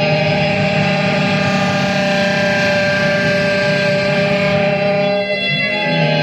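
Saxophone played through effects pedals: a loud, dense drone of many held tones layered on one another, sustained without a break.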